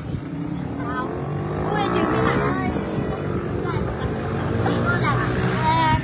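People talking and laughing over a steady low engine drone.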